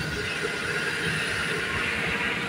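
Steady engine and road noise of a truck, a low rumble under an even hiss, heard from its open cargo bed.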